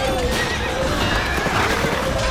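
A horse whinnying over galloping hoofbeats, with the call loudest near the end, set against the music of a film battle soundtrack.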